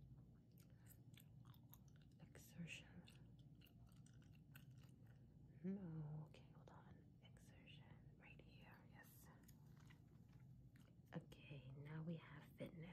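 Faint, close-miked gum chewing: a scatter of soft, wet mouth clicks and smacks. A brief low murmur of voice comes about six seconds in.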